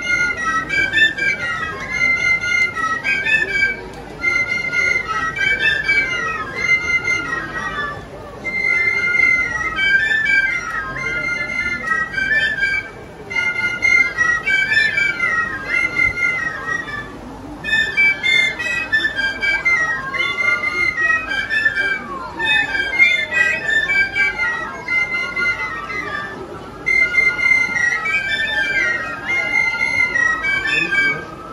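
An ensemble of Romanian shepherd's flutes (fluier) playing a folk melody in unison, in short repeated phrases with brief pauses between them.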